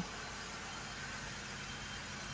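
Infiniti Q60's 3.0-litre twin-turbo V6 idling, heard as a faint, steady hum with no other events.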